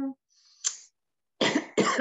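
A woman coughing twice in quick succession, about a second and a half in.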